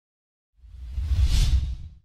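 A whoosh sound effect with a deep low end. It swells up out of silence about half a second in, peaks, and fades away just before the end.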